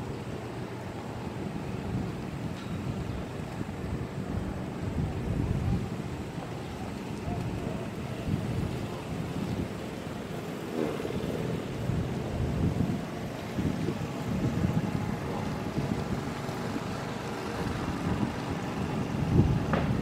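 Wind buffeting the microphone: a low, uneven rumble that swells and fades in gusts.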